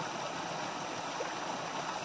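Small woodland stream and waterfall running with a steady rush of water.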